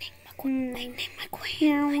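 A high-pitched voice calling out drawn-out 'no' cries: a short one about half a second in, then a longer one that falls in pitch near the end.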